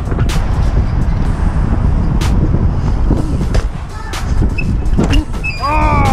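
Wind rushing over a bike-mounted action camera's microphone and BMX tyres rolling on pavement, with a few sharp clicks and knocks from the bike. A shouted voice comes in near the end.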